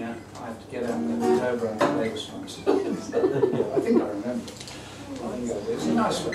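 Acoustic guitars being picked and strummed loosely, with people talking over them.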